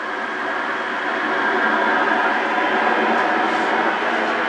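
Shortwave receiver's audio on the 10 m AM band: a steady hiss of band noise and static with no voice coming through, rising in level at the start.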